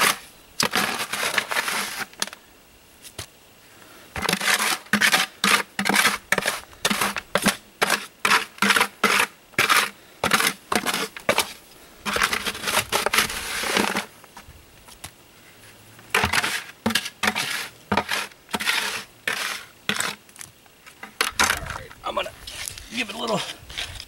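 Wet concrete mix being scraped out of a plastic five-gallon bucket, a run of quick gritty scraping strokes about two a second, broken by short pauses.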